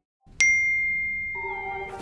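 A single bright notification ding, struck once about half a second in and ringing out as it fades for over a second. Background music starts softly under it near the end.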